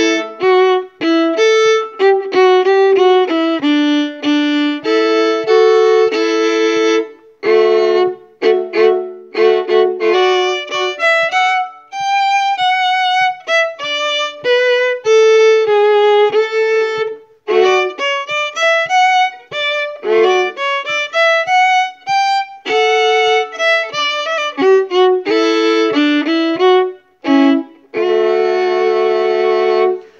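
Solo violin playing a dance-like part, much of it in double stops with short, detached notes, broken by brief pauses between phrases and closing on a held chord near the end.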